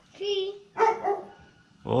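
A dog barks twice, about half a second apart.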